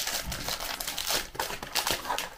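Clear cellophane wrapping crinkling and tearing in irregular crackles as it is pulled off a small cardboard cosmetics box by hand.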